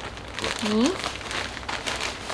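Frosted plastic zip-top bag crinkling as it is handled and opened, in a run of quick crackles.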